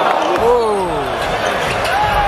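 Basketball being dribbled on a hardwood court amid loud arena noise, with drawn-out shouts that fall in pitch, one about half a second in and another near the end.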